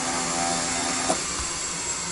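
Steady mechanical hum with a constant low tone. About a second in there is a sharp click, after which the low tone stops and only a quieter hiss remains.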